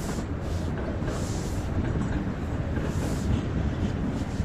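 A modern tram running along street tracks, a steady low rumble with some higher hiss over it.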